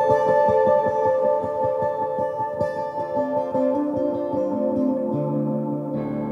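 Ambient electric guitar music: rapid plucked notes over long, ringing sustained tones. From about three seconds in, a lower line of notes steps upward, and a deeper note enters near the end.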